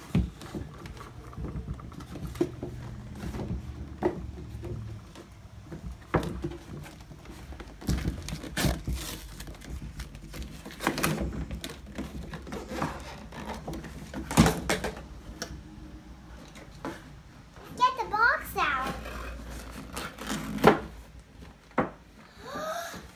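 A cardboard toy box being opened by hand: irregular knocks, thumps and scrapes of cardboard as flaps are pulled and the box is shifted on a desk, with a few louder knocks about eight and fourteen seconds in. A child's voice makes brief sounds near the end.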